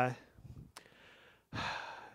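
A man's pause in speech: the tail of a drawn-out "uh", a second of near quiet with one faint click, then a breath drawn in through the microphone just before he speaks again.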